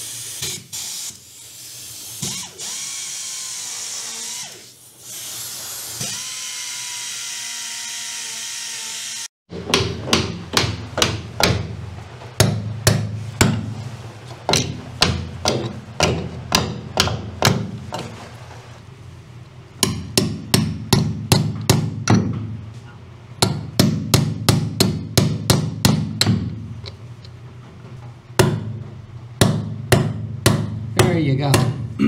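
A steady hiss, like a running air tool, cuts off about nine seconds in. Then a hammer taps in quick runs of sharp strikes, a few a second, with short pauses between the runs.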